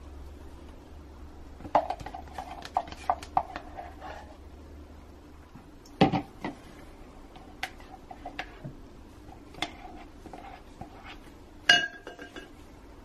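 Soap-making cups and a spatula clinking and knocking against each other and the work surface as they are handled and set down. A run of light taps comes about two to four seconds in, a sharper knock about halfway, and a loud double knock near the end.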